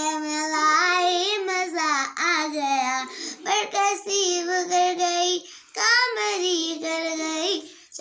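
A young girl singing solo without accompaniment, in one voice with long held, wavering notes and a short breath about five and a half seconds in.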